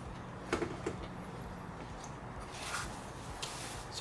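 Faint knocks and scrapes of a battery pack being handled and set down into an e-bike frame's battery bay, a couple of small clicks about half a second in and a soft scuff a little before the end, over a low steady hum.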